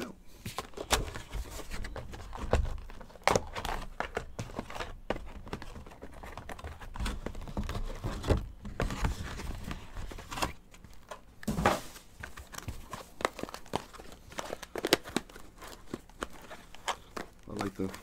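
Cardboard trading-card hobby box being torn open and handled: irregular crinkling, tearing and knocks as the flaps are pulled and the small boxed packs inside are taken out.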